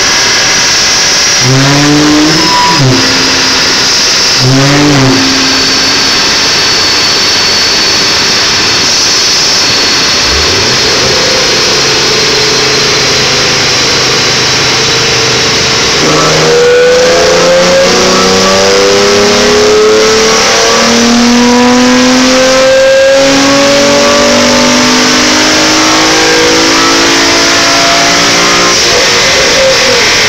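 Infiniti G35's 3.5-litre V6 being revved during tuning: two short blips near the start, then from about halfway a long pull with the engine pitch climbing in several steps. A loud steady rush runs underneath throughout.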